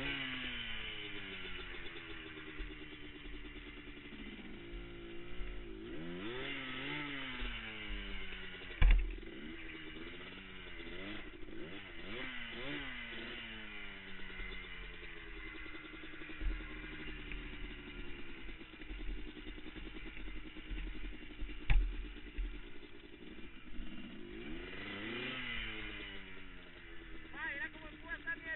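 Sport ATV engine revving up and down over and over as the throttle is worked, its pitch rising and falling. Two sharp knocks stand out, about a third of the way in and again past three quarters.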